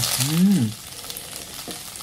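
A man imitating sizzling frying oil with his mouth: a spitting, hissing sound. A short hummed 'mm' rises and falls in pitch in the first second, and the hiss runs on more quietly after it.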